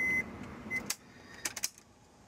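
A steady high electronic beep cuts off just after the start and gives one short blip soon after. Then come a few sharp clicks as the ignition key is worked in the lock cylinder.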